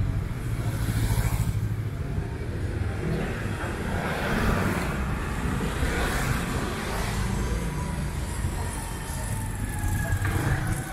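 Street traffic with small motorbike engines running; a motorbike rides past close by about a second in, over a steady low rumble of street noise.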